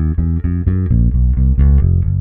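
Electric bass guitar played fingerstyle, working through a one-finger-per-fret exercise: a steady run of single fretted notes, about four to five a second.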